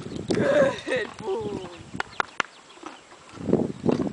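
A person's voice for about a second and a half, its pitch rising and falling, followed by a few sharp clicks and a burst of rustling noise near the end.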